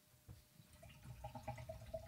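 Dark beer being poured from a 16 oz can into a Teku stemmed glass: a faint trickle of liquid into the glass, starting about a second in.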